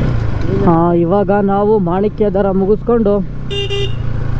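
A motorcycle engine runs steadily under a man's talking, and a short vehicle horn toot sounds near the end.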